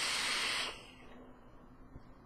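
Hit from a vape dripper on a box mod: a hissing draw through the atomizer that lasts under a second and stops abruptly.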